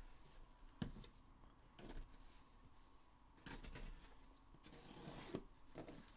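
Faint handling of a taped cardboard shipping case: a few soft, brief knocks and rubs spaced a second or so apart, over near silence.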